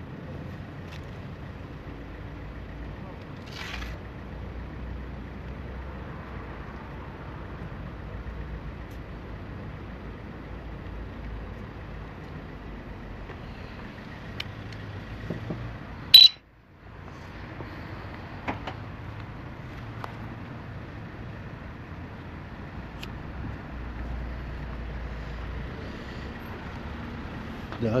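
Steady outdoor background noise with a low rumble. About sixteen seconds in there is one sharp click, then a brief cut to near silence before the noise returns.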